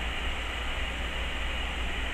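Steady background hiss with a constant low hum underneath: room tone and recording noise, with no distinct sound events.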